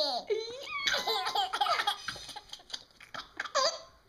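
A baby's belly laughs: a string of high-pitched laughs in several bursts, loudest right at the start.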